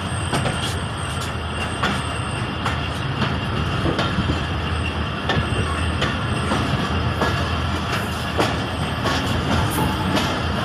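Passenger train coaches rolling slowly over the track, heard from an open coach door: a steady low rumble with irregular clacks and knocks from the wheels on rail joints, and now and then a faint high wheel squeal.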